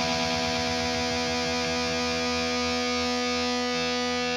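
Electric guitar through a distorted amp simulator: the B and high E strings are sustained together while the B string is tuned by ear. The two notes beat against each other in a wavering pulse that slows as the B string comes up to pitch.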